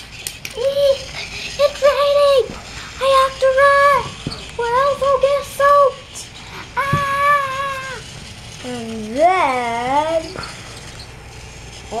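A young child's voice making wordless sing-song vocal sounds: a run of short held notes at one high pitch, then a longer note, then a swooping, wavering call that dips and rises before it stops.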